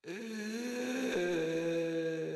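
A low, sustained vocal drone like a chanted or hummed 'ahm', starting suddenly and stepping down in pitch about a second in.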